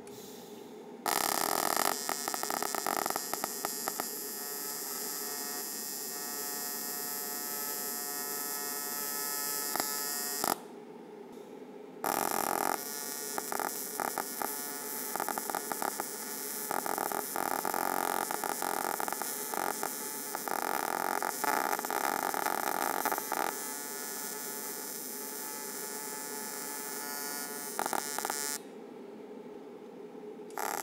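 AC TIG welding arc on aluminum from an Everlast PowerPro 205Si: a steady buzzing hum with crackle. It is struck about a second in, breaks off for a moment near the middle, is restruck, and stops near the end.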